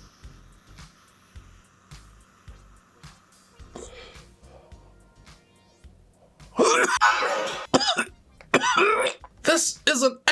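A long, faint draw on a vape pod device turned up to its maximum setting. From about six and a half seconds in comes a fit of loud, repeated coughing as the big hit is exhaled.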